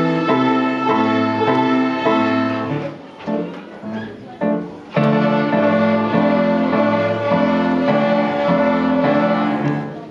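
A group of young children playing violins together, bowing a tune in sustained notes. The playing breaks off for about two seconds near the middle, then resumes and stops just at the end.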